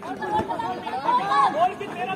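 Several distant voices of handball players and onlookers calling out and chattering over one another, with a few short thuds.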